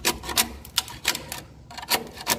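A metal scraper blade scraping a wooden swiftlet nesting plank in a series of short, sharp strokes, about six in two seconds, taking old nest residue off the wood.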